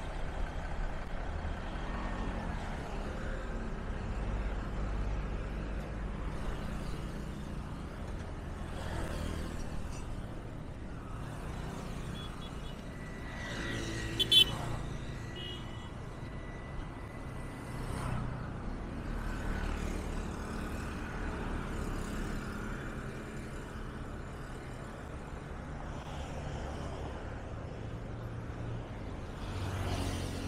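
Road traffic going by on a busy multi-lane road: cars and motorcycles pass in a steady wash of engine and tyre noise that swells and fades as each one goes by. About midway there is a brief sharp sound with a high tone, the loudest moment.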